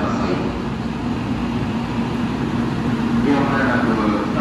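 N700-series Shinkansen train running past along the station platform: a steady rumble with a constant low hum. Voices come in near the end.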